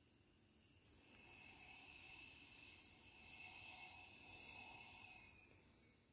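Pepsi Max Cherry fizzing hard in the can after a sugar-free Polo mint was dropped in: a steady, high hiss of carbonation. It starts about a second in and fades out near the end.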